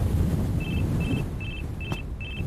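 Anime sound effect: a steady low rumbling noise with a short, high beep repeating about two and a half times a second.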